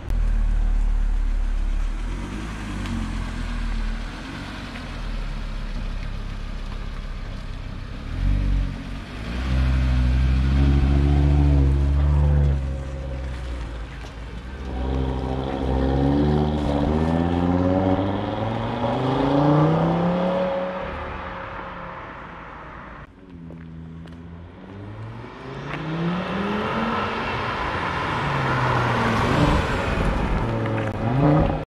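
Audi RS3's turbocharged 2.5-litre five-cylinder engine accelerating hard, its note climbing in pitch again and again as it pulls through the gears and dropping back between pulls. It fades for a moment a little over three-quarters of the way through, then grows louder again as the car comes close.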